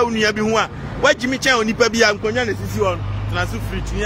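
A man talking fast in a street, with traffic behind him; a steady low engine drone from a nearby motor vehicle comes in a little past halfway and carries on under his voice.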